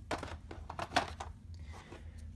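Hands taking board-game pieces out of a plastic insert tray: a string of light clicks and rustles, the sharpest knock about a second in.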